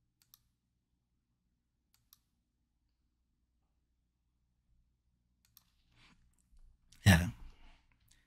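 A pause of near-quiet room tone broken by a few faint, sparse clicks, then one short, loud breath from the man about a second before the end.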